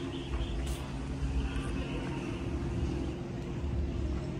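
A low, steady outdoor rumble with a faint, steady hum over it.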